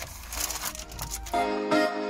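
Paper and cardboard packaging crinkling and rustling as a small box is opened by hand. About a second and a half in, louder background electronic music with a steady beat starts.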